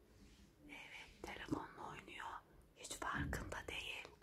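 Faint whispering: a few hushed, breathy words, louder in the second half.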